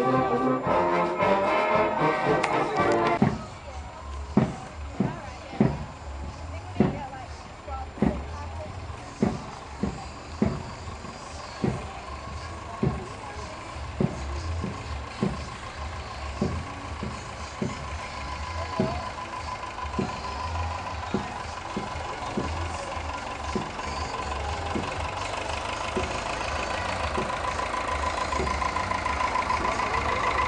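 Brass band playing, cutting off about three seconds in. A single drum then beats a steady marching time, roughly one to two strokes a second with occasional gaps, over the low rumble of parade vehicles' engines. The engine sound grows louder near the end as a tractor pulling a float approaches.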